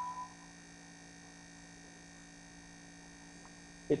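Faint steady electrical hum, a low drone with a few fixed tones, under a pause in the talk; the tail of a spoken phrase dies away at the start and speech resumes right at the end.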